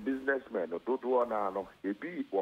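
Only speech: a man talking over a telephone line.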